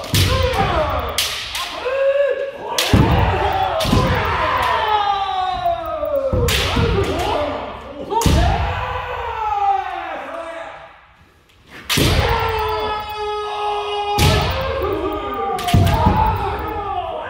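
Kendo sparring: repeated sharp cracks of bamboo shinai striking armour and feet stamping on the wooden floor, with loud kiai shouts that fall in pitch, echoing in a large hall. Past the middle the clatter briefly drops away, then one long held shout follows.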